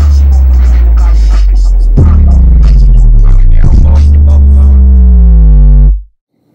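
Loud hip hop music with deep, sustained booming bass notes that change pitch about two seconds in and again a little later, cutting off suddenly near the end.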